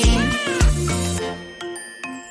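A kitten's single short meow that rises and falls in pitch, over background music with a steady beat; the music thins out in the second half.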